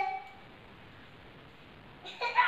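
A drawn-out, high-pitched voice trails off at the very start, then only faint, steady room hiss.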